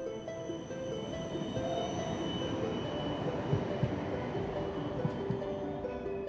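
Soundtrack music with long held notes over the steady rumble of a tram running on its rails.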